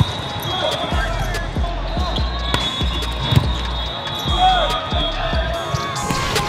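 Volleyball play on an indoor court: a ball being struck and bouncing, with sharp hits scattered throughout, over players' shouts and background chatter.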